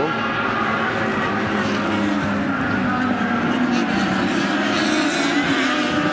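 IndyCar engines, the 3.5-litre Honda V8s, running at speed as a group of cars goes down the track, a steady, unbroken engine note.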